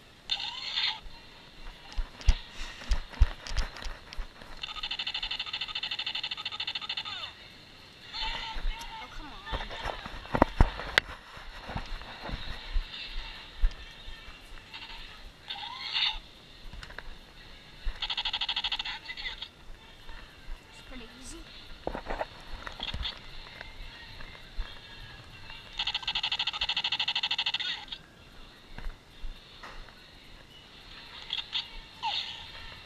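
Tactical laser tag gun's electronic firing sound effect: three buzzing bursts of rapid fire, each two to three seconds long. Short electronic chirps and scattered knocks come between the bursts.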